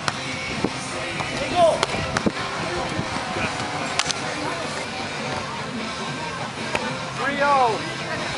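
Beach volleyball rally: sharp slaps of hands on the ball near the start, a teammates' hand slap about four seconds in, and two short shouts, over a background of music and chatter.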